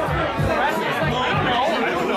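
Several people talking at once in a room, over background music.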